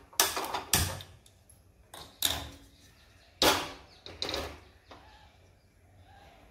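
Stick-type gas lighter clicking at a gas stove burner and a metal kadhai set down on the burner grate: about five sharp clicks and clanks over the first five seconds.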